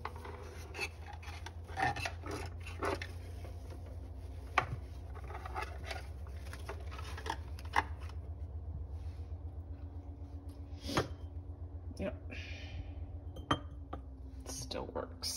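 Artificial maple-leaf stems being handled and arranged: rustling of the fabric leaves and plastic stems, with scattered sharp clicks and taps as they knock against the glass canisters. A steady low hum runs underneath.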